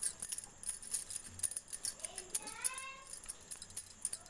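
A cat meows once, a rising call a little after two seconds in, over a light, continuous crackling and clicking of hands squeezing sticky dough.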